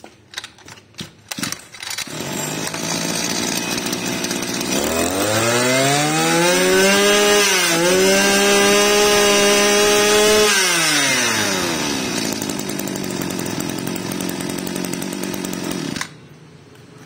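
Small 25cc two-stroke brush-cutter engine pull-started, catching about two seconds in and idling, then revved up to high speed for about six seconds with a brief dip, dropping back to idle and cutting off suddenly at the end.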